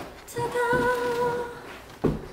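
A woman's voice singing one long, held note with a slight waver, starting a moment in and fading near the end.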